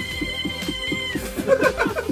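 A karaoke backing track with a steady beat while a woman sings into a microphone. She holds one long high note for about the first second, then sings a short run of quicker notes.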